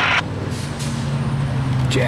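A large diesel engine idles with a steady low hum. There are short airy hisses about half a second in, and a brief sharp sound near the end.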